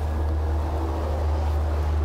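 A steady low rumble with a faint hiss over it, unchanging throughout.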